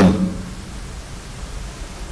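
Steady background hiss in a pause between a man's spoken phrases, with no distinct event in it.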